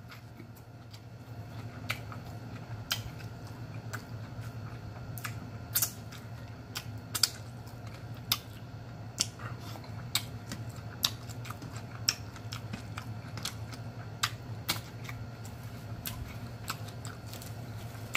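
A person chewing food with lip smacks: irregular wet clicks, roughly one a second, over a steady low hum.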